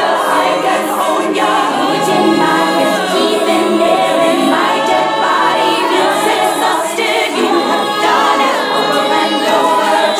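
Layered female vocals singing choir-like harmonies, the voices gliding and overlapping.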